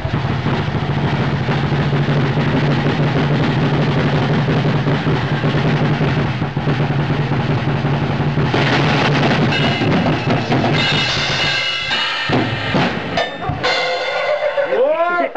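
Acoustic drum kit played fast and hard: a rapid, unbroken roll heavy in bass drum for about eight seconds. Then cymbals crash in over it, and it breaks up into separate hits near the end.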